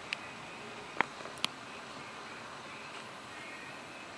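Low steady room hiss with three short, faint clicks in the first second and a half, the middle one the loudest.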